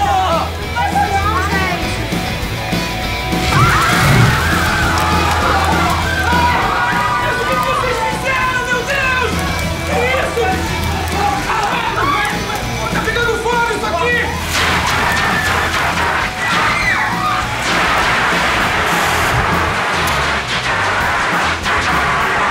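Loud rock music with young people shouting and singing along. About two-thirds of the way in, a dense rush of noise joins and takes over.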